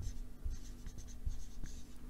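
Dry-erase marker writing a word on a whiteboard: a quick series of short, faint, high scratchy strokes.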